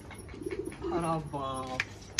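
Domestic pigeons cooing in a loft, with a man's short wordless vocal sound about a second in.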